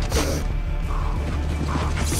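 Soundtrack of a tense TV drama action scene: a steady low music drone under scattered mechanical clicks and creaks, such as gun handling.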